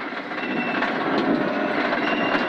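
Rally car's engine pulling hard under acceleration, heard from inside the cabin, with tyre and gravel noise from the loose surface. The sound grows slightly louder as the car gathers speed.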